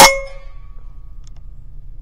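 A single shot from an Evanix Rainstorm SL .22 PCP air rifle: one sharp crack right at the start that rings on briefly with a metallic tone, fading within about a second.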